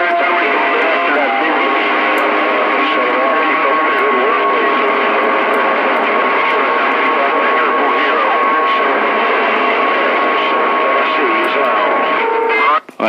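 Stryker CB radio receiving a crowded skip channel: steady static with several overlapping garbled voices and steady heterodyne whistles, a higher one joining about a second and a half in.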